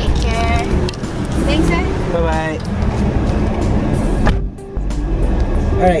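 Low, steady rumble of a car idling, heard from inside the cabin, under background music and brief voices.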